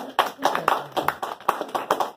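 A small group applauding, with separate, sharp handclaps at an irregular pace of several a second, some of them very close.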